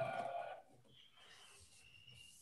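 A voice trails off in the first half second, then near silence, with only a faint thin high tone.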